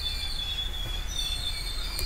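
A steady high-pitched whine that wavers slightly, over a low hum, with no speech.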